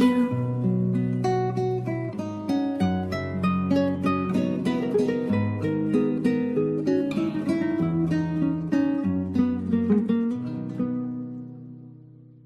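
Acoustic guitar playing a picked instrumental passage, a quick run of plucked notes over a low bass line. About eleven seconds in the notes stop and a last chord rings out and fades away, ending the song.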